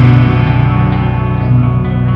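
Live rock band playing loud, with electric guitars and bass holding sustained chords.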